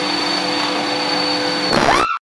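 Vacuum cleaner motor running steadily with a constant whine. Near the end it breaks into a louder burst with a rising pitch, then cuts off abruptly.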